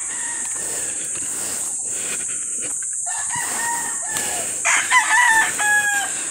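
A rooster crowing twice, a long held crow about three seconds in and a louder one near the end, over a steady high buzz of insects.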